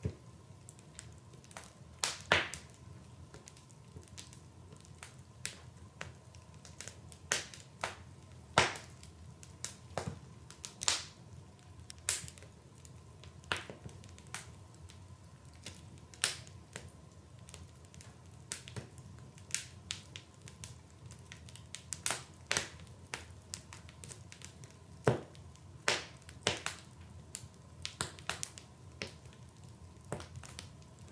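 Irregular sharp crackles and snaps, one or two a second and uneven in loudness, over a faint steady hum.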